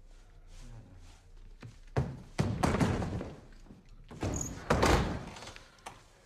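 A door slamming: a few heavy knocks and thuds, the loudest about five seconds in.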